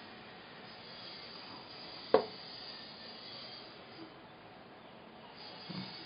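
Quiet room hiss while craft pieces are handled and glued, with one sharp click about two seconds in.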